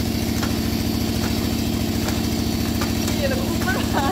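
An engine idling steadily, a fast, even low rumble that does not change. A woman laughs near the end.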